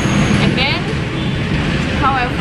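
Steady low rumble of road traffic, motor vehicles running along the street, with a woman's voice over it.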